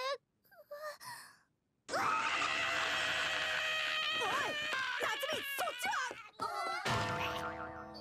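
Japanese anime soundtrack. A girl character's voice trails off at the start, followed by a short pause. From about two seconds in comes a loud comic passage of music and cartoon sound effects with pitch swoops, and a fresh loud hit about seven seconds in.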